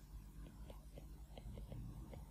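Faint, irregular light ticks of a stylus writing on a tablet screen, over a low hum.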